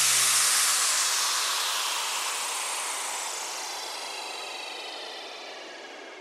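A hissing, wind-like whoosh sound effect fading away slowly and evenly, while a few low sustained notes left over from the music die out in the first second or so.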